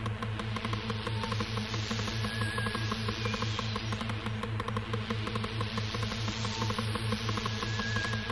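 1990s hardcore techno from a DJ tape mix: a fast, steady electronic beat under a hissing, noisy layer that sweeps up and down every few seconds.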